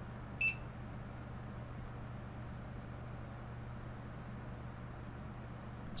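Barcode scanner giving one short, high beep about half a second in, the sign of a successful read of the printed barcode. A faint steady low hum runs underneath.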